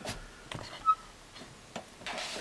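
A few light plastic clicks and taps as a plastic lamp post is fitted into a small plastic dock of an action-figure diorama, the loudest a little before halfway.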